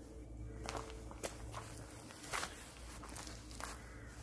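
Footsteps of someone walking over an overgrown outdoor garden path: a handful of soft, irregularly spaced steps.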